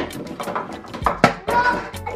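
Several light knocks and clicks of wooden toy-kitchen pieces being handled, the loudest a little over a second in.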